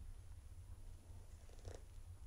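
A quiet pause: faint, steady low rumble with nothing else distinct.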